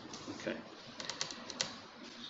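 Bible pages being leafed through on a wooden lectern, picked up faintly by the lectern microphone: a handful of light, sharp clicks and rustles bunched together about a second in, after a soft spoken "Okay."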